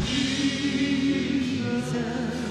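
Live gospel worship music: a band and singers holding a sustained chord in a slow song.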